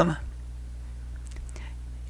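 The end of a spoken word, then a steady low hum with two faint ticks about a second and a half in.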